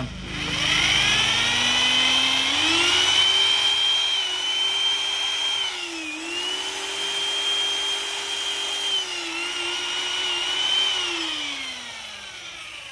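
A Bosch rotary hammer drill's electric motor runs free in the air with no load. It speeds up into a steady high whine over the first couple of seconds, dips briefly twice as the trigger is eased, then winds down near the end. This is its variable-speed trigger control at work.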